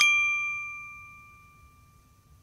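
A single bright chime-like ding sound effect, struck once and ringing with a few clear tones that fade away over about a second and a half, marking a countdown number appearing on screen.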